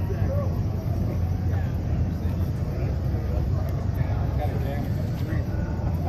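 A vehicle engine running steadily with a low rumble, under indistinct voices of people nearby.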